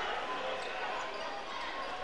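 Faint, steady crowd murmur and room noise in a large basketball gym during a stoppage in play.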